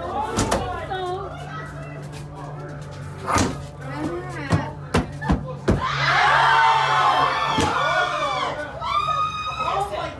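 Screams and shouting voices mixed with several sharp bangs, the loudest screaming about six to seven seconds in, over a steady low hum from a scare attraction's soundtrack.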